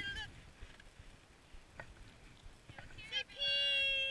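A young child's high voice close to the microphone: a few words right at the start, then about three seconds in a short vocal burst followed by a high, steady held call of under a second, the loudest sound here. In between it is fairly quiet, with a couple of faint clicks.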